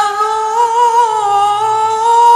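A man's voice reciting the Quran in melodic style, holding one long drawn-out note with a slight waver in pitch.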